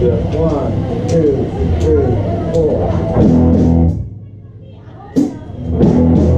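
Live band playing: electric bass and electric guitar over drums, with a voice or saxophone line on top. The band stops dead about four seconds in and crashes back in with a loud hit about a second later.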